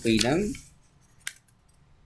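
A short spoken word, then near quiet broken by a single sharp click about a second later.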